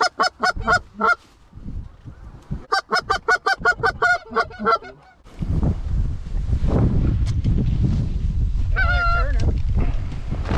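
Goose honks and clucks in two quick runs of about five short calls a second, then a single longer honk near the end. From about halfway a loud low rumble takes over.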